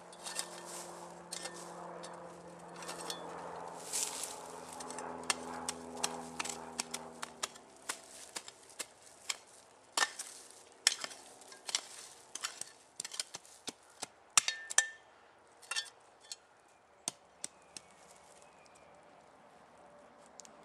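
Folding entrenching tool digging into forest soil and leaf litter: repeated sharp chops and scrapes of the steel blade, coming thick and fast in the middle of the stretch. A low steady drone sits underneath and stops about seven and a half seconds in.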